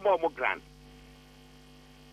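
A man's speech breaks off in the first half-second, leaving a steady, faint electrical hum of a few low tones.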